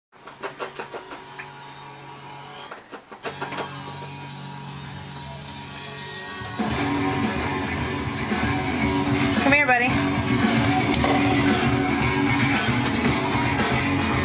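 Rock music with electric guitar, sparse and quieter for the first six seconds, then louder and fuller with the whole band from about six and a half seconds in.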